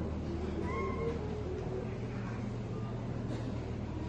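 Lull after choral singing stops: room noise with a steady low hum, and one short, high call that rises and falls about a second in.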